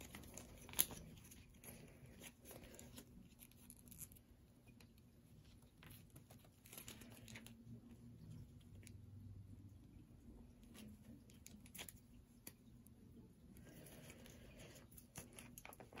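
Near silence with faint, scattered rustles and small clicks of a plastic action figure being handled while a stiff rubber jacket is worked onto it; one sharper click about a second in.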